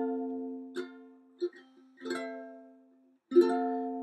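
Ukulele with a capo on its neck, strummed chords. A chord rings out and fades, then two short, light strums, then another chord rings and dies away about two seconds in. After a brief silence a fresh strum rings near the end.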